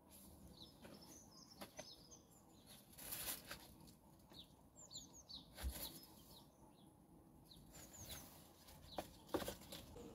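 Faint chirping of small birds: brief high chirps in a few small clusters, with a few soft knocks in between.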